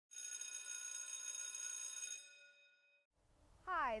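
A bright, bell-like chime that sounds once at the start, rings steadily for about two seconds and then fades away. Near the end a woman's voice begins.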